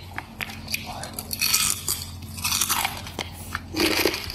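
Close-up crunching and chewing of a crispy fried snack chip (keripik): irregular crisp crunches as it is bitten and chewed.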